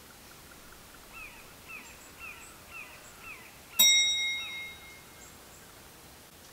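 A bird calling a run of short downslurred whistles, about two a second. Then a single sharp metallic clang that rings on for about a second.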